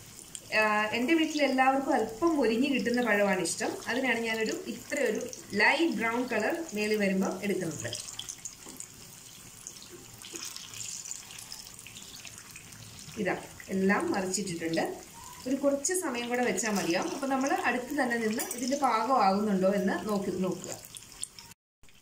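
Battered banana fritters deep-frying in hot oil, a steady sizzle that runs under a voice talking and is heard on its own for several seconds in the middle.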